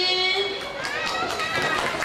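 Young children's voices: a held sung note that ends about half a second in, then several children calling out together.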